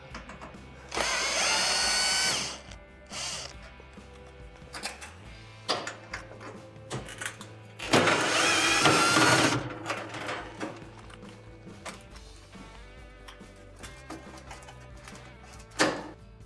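Cordless drill-driver running twice, each time for about a second and a half, with a whining motor pitch as it backs out two Phillips screws. Light clicks and knocks of the tool and screws come between the two runs.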